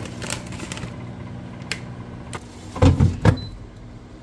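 Plastic air fryer basket being slid back into the air fryer, ending in two loud clunks about three seconds in, after a few light clicks. A steady low hum runs underneath.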